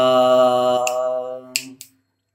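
A man singing unaccompanied, holding one long note that fades out about a second and a half in. A few short sharp clicks follow, then a brief silence.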